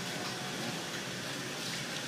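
Steady rushing background noise, even throughout, with no distinct knocks or tones.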